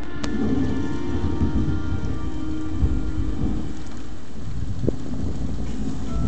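Rolling thunder over rain, the low rumble swelling and fading several times.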